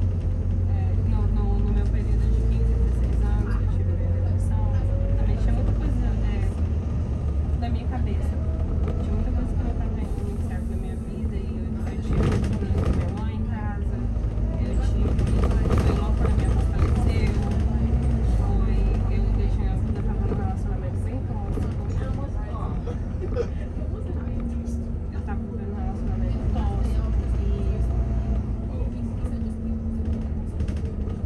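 Inside a London double-decker bus on the move: a steady low rumble of the engine and drivetrain with road noise as it drives along.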